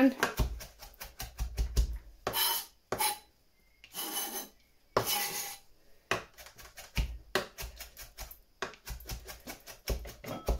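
Chef's knife finely chopping fresh mint on a plastic chopping board: quick runs of knife strikes, broken a few times in the middle by longer strokes of the blade scraping across the board.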